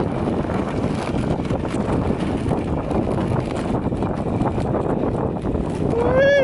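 Steady rushing noise of a husky-drawn sled running downhill over snow, the runners hissing on the snow and wind buffeting the microphone.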